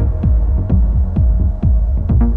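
Techno track with a steady four-on-the-floor kick drum, about two beats a second, each kick dropping in pitch, over a low sustained bass tone with short hi-hat ticks between the beats.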